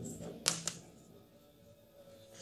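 Two short sharp clicks close together about half a second in, followed by a faint low background hum.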